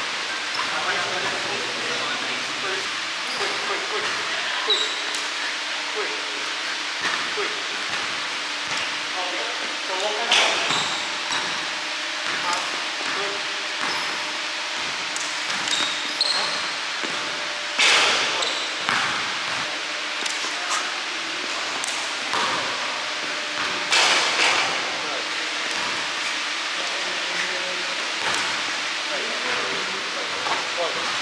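Basketball bouncing on a hardwood gym floor during dribbling drills, with short knocks over a steady hiss. A few louder, sharper noises come about a third of the way in, at two-thirds and near the three-quarter mark.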